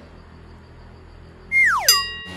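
A comic sound effect: after a quiet low hum, about one and a half seconds in, a loud whistle-like tone slides quickly down in pitch, then a short ringing tone sounds at the very end.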